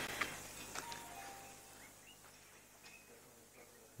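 Near silence: faint background hiss that fades away, with a few faint, brief high tones.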